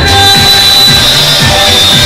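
Loud amplified band music with a steady electronic drum beat and held keyboard tones.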